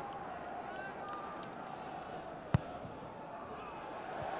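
Stadium crowd noise at a low, steady level, with one sharp thump of a football being kicked about two and a half seconds in, the corner kick being struck.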